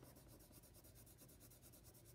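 Near silence: faint scratching of a coloring tool on paper, with a faint steady low hum underneath.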